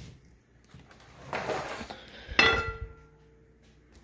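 Rustling as computer hardware is handled, then a sharp metallic clink that rings on briefly, a metal part knocked as the power supply is taken out.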